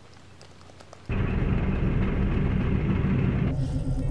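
About a second of quiet room tone, then a steady low rumbling hum cuts in suddenly: the engine ambience of a spaceship bridge.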